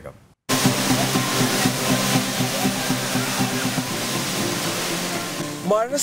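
Waterfall pouring steadily, starting abruptly after a brief silence, with background music playing under it; a man's voice begins near the end.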